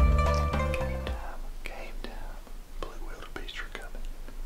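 Background music with plucked notes fades out about a second in. It gives way to faint whispering with a few small clicks.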